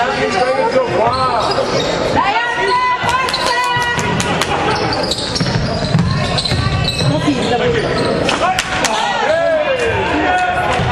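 Basketball bouncing on a wooden gym floor during live play, with sneakers squeaking and players and spectators calling out.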